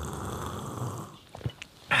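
A man gulping beer from a glass mug in noisy, throaty swallows, then a pause and a loud breathy 'ah' right at the end.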